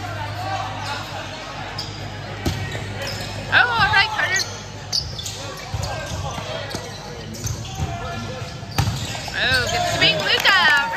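A volleyball is struck several times during a rally, from the serve through passes, sets and hits. Each contact is a sharp smack that echoes around a large gym hall, and players shout in between.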